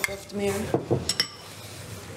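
Cutlery clinking against plates and dishes at a meal, with a few sharp ringing clinks a little over a second in.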